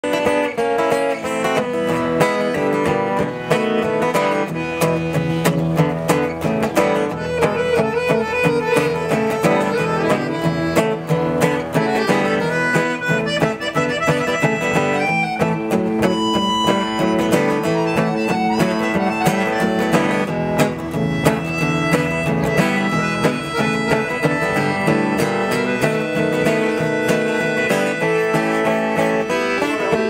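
Acoustic guitar strummed with a piano accordion playing along, instrumental with no singing.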